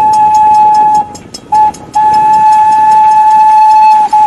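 Steam locomotive whistle blowing one steady note: a long blast, a short one, then another long blast, over a fast rhythmic chuffing and steam hiss.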